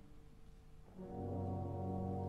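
Orchestral classical music: a held low chord dies away into a near-quiet gap, and about a second in a new sustained chord enters, led by low brass.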